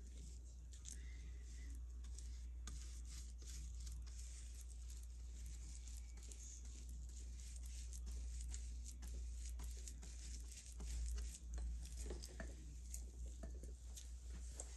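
A flat paintbrush wet with Mod Podge dabbing and stroking over tissue paper on a board: faint scattered ticks and light rustling over a steady low hum.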